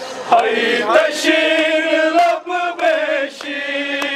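Men's voices chanting a noha, a Shia Muharram lament: a lead voice over a microphone with mourners singing along in long, held notes. There is a brief drop in the singing a little past halfway.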